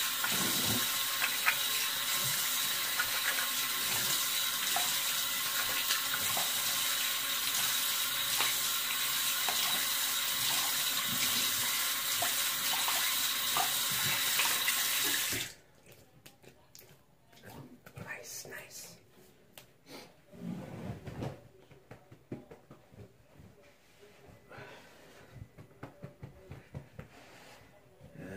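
Bathroom sink tap running full with splashing as a man rinses his head under it; the water shuts off abruptly about halfway through. After that, faint intermittent rustling and rubbing of a towel drying off.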